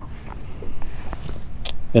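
Quiet hand-handling noise of a soft-plastic craw trailer being threaded onto a swim jig's hook: faint rubbing and small clicks, with a brief sharp rustle near the end. A steady low rumble runs underneath.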